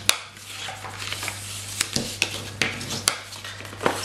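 Bone folder burnishing folds in cardstock: paper scraping and rubbing under the folder, with a scattering of sharp clicks as the tool and card knock on the wooden tabletop.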